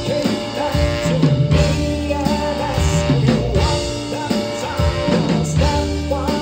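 Live horn-rock band playing: trumpet, trombone and saxophone over electric guitars, bass guitar and drum kit, with a male lead singer singing.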